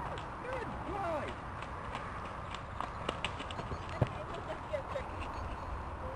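Hoofbeats of a horse cantering away across grass: a run of irregular knocks and clicks, the sharpest about four seconds in. A few short sliding calls come in the first second.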